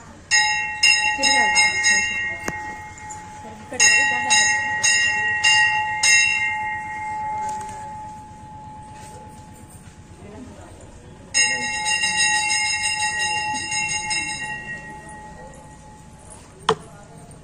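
Brass temple bell rung by hand in three bursts of quick repeated strokes, about two to three a second, its tone ringing on between strokes and after each burst.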